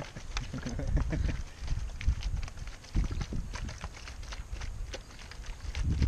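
Sugar syrup glugging out of a plastic bottle into a plastic honeycomb cassette, with many irregular small clicks and plastic handling noises over a low rumble.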